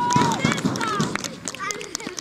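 Children's high-pitched voices shouting and calling across a football pitch, with one long held shout at the start. The shouting dies down in the second half.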